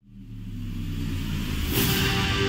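A low, steady droning hum of several tones fades in from silence and grows louder, with a rushing swell just before the end: the opening of an outro soundtrack.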